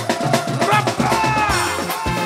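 Live band music with a fast drum beat. Electronic percussion pads are struck with sticks, over melodic lines that slide down in pitch.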